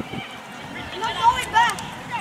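High-pitched shouts from children on a football pitch: two loud calls about a second in and at a second and a half, over a background of other voices.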